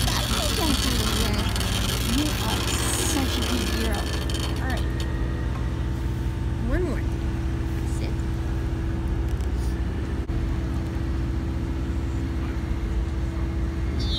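Wheelchair moving over cobblestone paving: a steady hum and rattle, with a few short squeaks in the first few seconds. The wheelchair noises are ones the user is really starting to hate.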